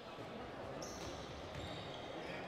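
Faint court sound of a handball game in a sports hall: the ball bouncing on the wooden floor, with a brief high squeak about a second in.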